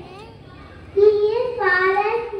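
A young girl singing into a microphone, with no accompaniment. After a short pause she starts a new phrase of held notes about a second in.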